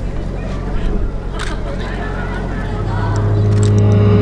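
Murmur of spectators' voices over a steady low hum from the loudspeaker system; about three seconds in, a deep droning tone swells up from the loudspeakers as the dance music begins.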